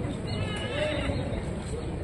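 Spectators' voices at an outdoor football match, with one high, wavering shout about half a second in that lasts under a second.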